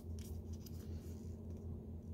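Origami paper rustling and rubbing softly as hands fold and crease it, mostly in the first half, over a steady low hum.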